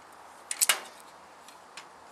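Locking pliers (mole grips) on an aluminium greenhouse frame, being loosened off and reset: a quick cluster of sharp metallic clicks about half a second in, then a few faint ticks.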